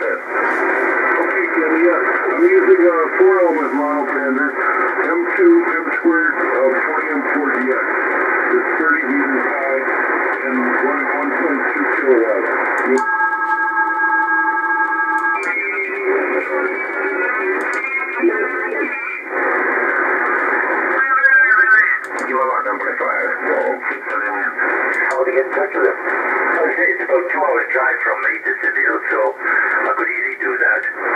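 Amateur-radio single-sideband voice received on the 20 m band by a software-defined radio receiver, heard through its narrow, tinny audio filter, as the receiver is retuned from one station to the next. About 13 seconds in, a few steady tones sound for about two seconds, and a little past 20 seconds a signal sweeps past as the tuning moves.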